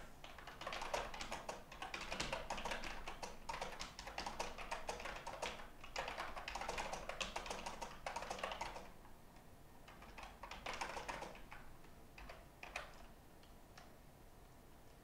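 Computer keyboard being typed on in fast, dense runs of keystrokes, with a pause about nine seconds in, then a short burst and a few last keystrokes near the end.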